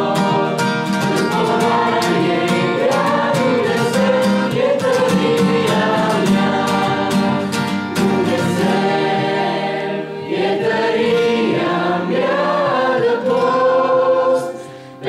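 A group of young men and women singing a song together in unison from song sheets, with an acoustic guitar strummed beneath, the strumming plainest in the first half.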